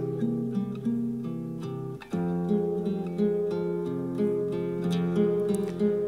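Instrumental acoustic guitar accompaniment of a folk song, playing between sung lines, with a brief break about two seconds in.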